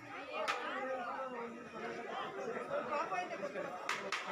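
Crowd chatter: many people talking at once, with a sharp click about half a second in and another near the end.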